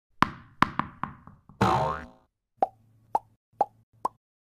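Cartoon pop sound effects for an animated logo: four quick pops in the first second, a longer sliding sound near the middle, then three more pops about half a second apart.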